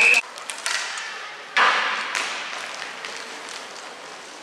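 Referee's whistle, one short sharp blast, stopping play in an inline hockey game. About a second and a half later comes a sudden burst of rink noise that fades away.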